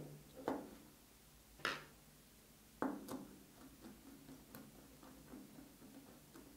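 Faint clicks and taps of a wire and small hand tools being handled at a miniature circuit breaker on a tabletop: three clearer clicks in the first three seconds, then light scattered ticks.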